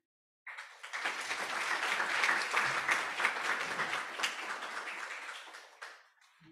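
Audience applauding, beginning about half a second in and dying away near the end.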